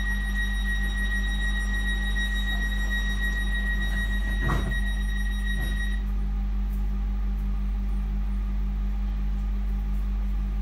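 Electric train's interior running noise: a steady low hum with a high, steady whine that stops about six seconds in. There is a brief louder rush a little before the middle.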